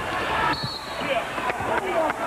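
Arena crowd noise with a referee's whistle blown briefly, about half a second in, calling a foul. A few sharp knocks follow near the end.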